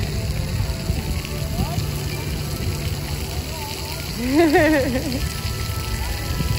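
Steady hissing spatter of splash-pad water over a low rumble. Around four and a half seconds in, a high voice rises and wavers briefly.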